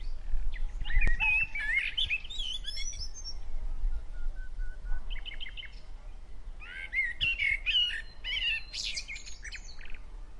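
Songbird singing, with two bursts of fast, warbling twittering about a second in and again about seven seconds in. Between them come a short steady whistle and a quick run of repeated short notes.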